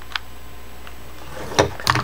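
Light handling sounds at a wooden workbench: a small click about a quarter second in, then a couple of short knocks near the end as a hot glue gun is set down on the bench, over a steady low hum.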